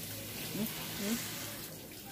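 Steady hiss of water on wet ground, with a few faint voice fragments over it.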